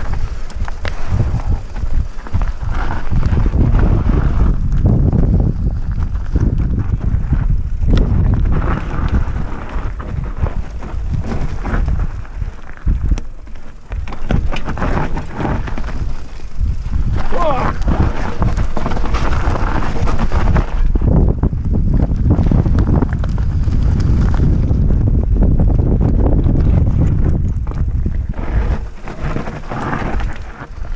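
Mountain bike descending a steep, loose, stony trail: tyres crunching over gravel and stones with frequent knocks and rattles from the bike, under heavy wind buffeting on a helmet-mounted microphone.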